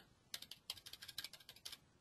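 Faint computer keyboard typing: a quick run of about a dozen light keystrokes as a number is typed into a field, starting about a third of a second in and stopping near the end.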